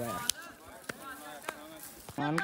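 Three sharp clicks or knocks, evenly spaced a little over half a second apart, under faint voices.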